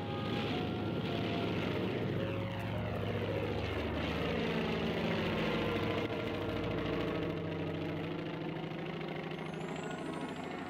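Propeller airplane passing by, its engine note falling in pitch as it goes past, over quiet background music with held low notes.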